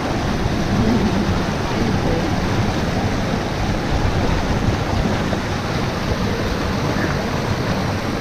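Mountain stream rushing over boulders in a small cascade, a loud, steady noise of falling and churning water.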